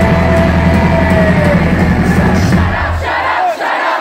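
A live pop-punk band plays loudly, heard from inside a crowd that is singing and shouting along. About three seconds in, the band's bass and drums drop out, leaving mostly the crowd's shouting.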